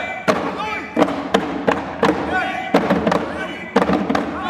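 Live traditional Kenyan dance music: drums carried by the dancers struck sharply in an uneven beat, a few strikes a second, with voices singing and calling over them.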